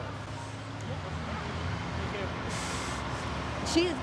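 Passing road traffic: vehicle engines running with a steady low hum, and a short hiss about two and a half seconds in.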